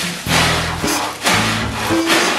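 Two hard, rhythmic breaths into a thin plastic carrier bag held over the face, the bag rustling and crinkling with each breath. Background music plays underneath.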